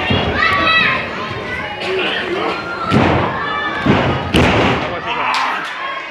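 Several heavy thuds of wrestlers' bodies and feet hitting a wrestling ring's canvas, with shouting voices from the crowd between them.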